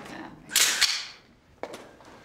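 A short, sharp swish about half a second in with a click inside it, then a second sharp click about a second later.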